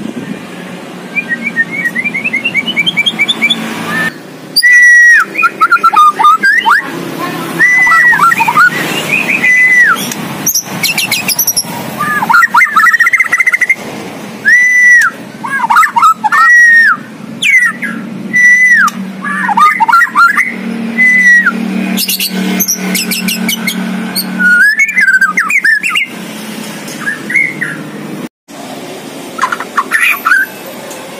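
White-rumped shama (murai batu) in full song: a long run of loud, varied whistled phrases, many of them repeated down-slurred whistles, mixed with quick rising note series and short high chips, with brief pauses between phrases. The song is packed with borrowed phrases mimicked from other birds (isian).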